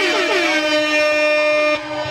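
A loud, steady horn-like note held for about two seconds and cut off just before the end, with a rapid warbling trill sounding over it.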